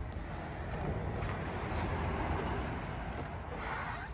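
Steady background noise with a low rumble and no distinct events: the room tone of a showroom picked up while the camera moves into a parked car.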